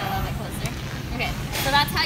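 A woman's voice talking in brief phrases over a low, steady background rumble.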